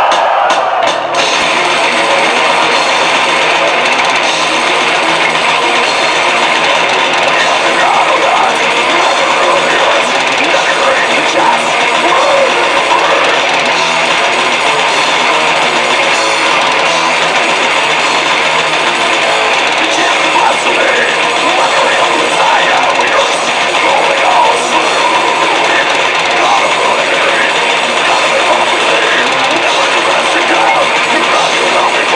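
Death metal band playing live: distorted electric guitars, bass and drums in a dense, loud, unbroken wall of sound that kicks in about a second in.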